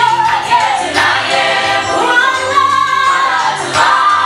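Gospel music: a choir singing a song with held, gliding notes over a bass line, with a female voice among the singers.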